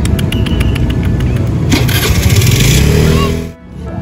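Steady low rumble of street traffic, with a burst of crinkling plastic about two seconds in as a wet cat-food pouch is squeezed open.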